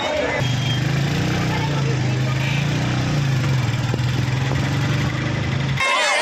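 A bus engine idling steadily amid the voices of a crowd. The engine sound cuts off suddenly just before the end, and shouting voices take over.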